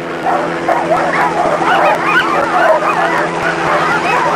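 A pack of sled dogs yelping and barking, many voices overlapping in a continuous clamour, the typical noise of a dog team eager to run at a race start. A steady low hum runs underneath.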